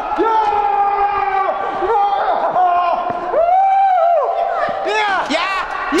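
Two people screaming with joy: long held screams, breaking into short rising-and-falling whoops in the last two seconds.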